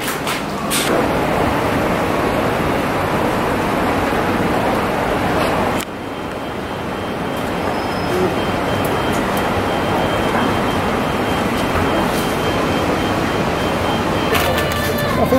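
City street traffic noise: a steady wash of road noise that breaks off suddenly about six seconds in and resumes at a slightly lower level.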